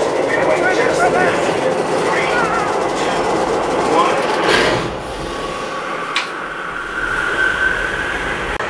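Dense rumbling noise mixed with indistinct voices, which drops away about five seconds in; a single click and a faint steady tone follow near the end.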